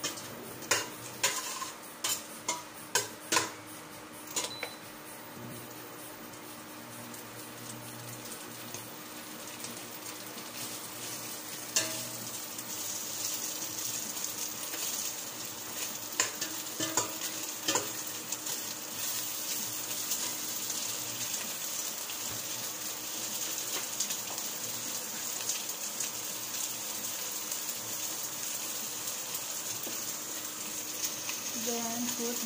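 A metal spoon stirs and knocks against a stainless steel pot, a quick run of clinks in the first few seconds and a few more later. Chili and spices fry in the pot, the sizzle building from about twelve seconds in and holding steady.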